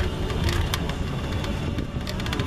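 A small vehicle moving slowly: a steady low rumble with frequent light rattling clicks.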